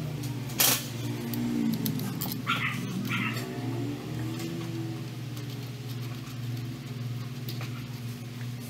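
Metal parts clinking as a washer and the front variator pulley are fitted onto the crankshaft of a Vespa Sprint 125's CVT drive, with one sharp clink about half a second in and lighter ones later, over a steady low hum. From about one to five seconds a wavering, gliding tone sounds underneath.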